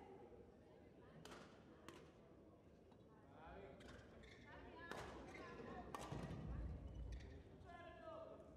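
Faint, sharp racket strikes on a shuttlecock during a badminton rally, a handful spread over several seconds against quiet sports-hall background.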